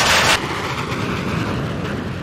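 Fighter jets flying overhead: a loud, high jet hiss and roar that drops suddenly about a third of a second in to a steady, lower rumble.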